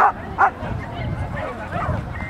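Small terrier giving two sharp, high yaps about half a second apart, the excited barking of a dog running an agility course.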